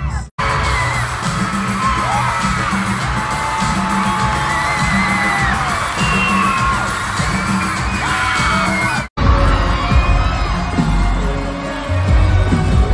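A large concert crowd screams and cheers over loud live pop music with a heavy bass. The audio drops out briefly twice, about a third of a second in and about nine seconds in, at cuts between clips; after the second cut the bass is heavier.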